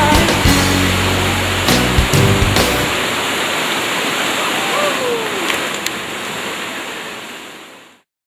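The last bars of a gospel song's band accompaniment, with bass and drums, stop about three seconds in, leaving the steady rush of flowing water over rapids, which fades out near the end.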